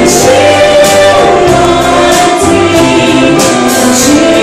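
Live song performance: a woman singing lead, backed by a choir and a live band, over a steady beat.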